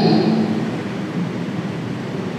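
Steady room noise picked up by a handheld microphone: an even hiss with a low rumble, easing slightly after the first moment.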